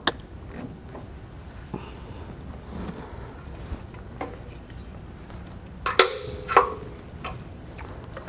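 Spring-loaded welding ground clamp and its cable being handled and clamped onto the steel edge of a welding table: faint rattling and clicks, then two sharp metal clanks about half a second apart some six seconds in, with a brief metallic ring between them.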